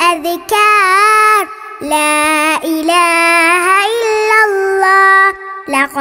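A child singing an Arabic nasheed unaccompanied, in long held, ornamented notes: a short phrase, a brief breath, then one long phrase of about three and a half seconds.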